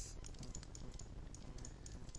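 Faint, irregular clicking of a computer keyboard and mouse, several clicks a second, over a low steady background hum.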